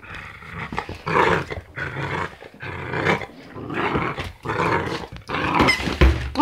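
Dog growling in repeated bursts, about one a second, while tugging on a toy held in a person's hand during play.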